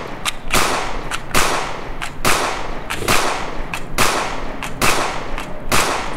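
Pistol fired shot after shot, roughly seven shots spaced a little under a second apart, each with a long echoing tail: the gun being emptied of its remaining rounds.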